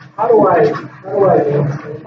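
Speech only: a person talking.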